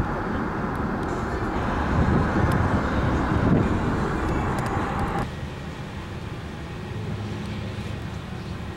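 Steady road and engine noise of a moving car, which cuts off abruptly about five seconds in to a quieter steady background.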